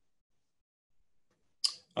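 Near silence for about a second and a half, then a short, sharp breath from the speaker just before he starts talking again.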